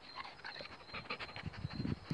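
A black Labrador moving right up against the phone: scattered light clicks and ticks, then from about halfway a louder low rubbing and bumping as its body brushes against the microphone.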